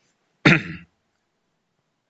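A man clears his throat once, a short rough sound about half a second in.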